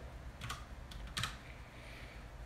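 A few keystrokes on a computer keyboard, two of them clearer, about half a second and just over a second in.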